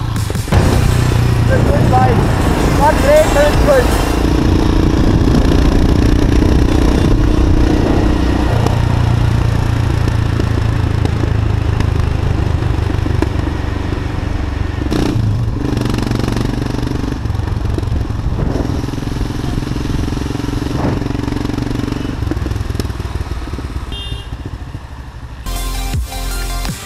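Royal Enfield Himalayan's single-cylinder engine running under way, with wind noise on the mic. The engine note shifts up and down in steps several times as the throttle and gears change. A short laugh and "great" come a few seconds in.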